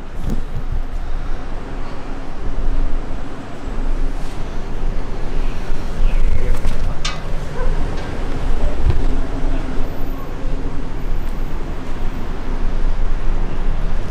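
Loud rumbling noise from a handheld camera being moved and handled while climbing outdoors, with a steady low hum underneath and a sharp click about seven seconds in.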